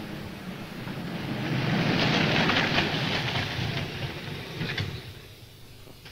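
A convertible car driving up a dirt road and pulling off into brush: the noise of its engine and tyres swells to a peak with rapid crunching and crackling, then dies away as it comes to a stop near the end.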